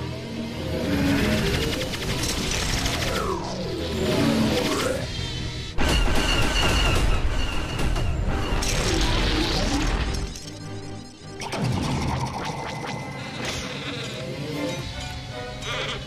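Film score music mixed with action sound effects: sweeping whooshes that rise and fall in pitch, and a sudden loud hit about six seconds in.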